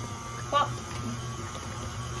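KitchenAid Artisan stand mixer running at a steady speed with a motor hum and faint whine, its beater working an egg into buttery pound cake batter in a steel bowl.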